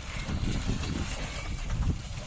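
Wind buffeting the microphone, a low uneven rumble, over a bullock cart moving along a muddy dirt track.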